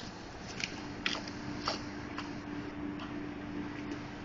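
Chef's knife slicing the top off a whole head of garlic on a plastic cutting board: about five short crunches and clicks as the blade cuts through the cloves and meets the board, over a steady hum.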